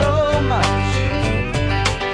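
Country band playing: acoustic guitar, electric bass and drums keeping a steady beat under a sliding melody line.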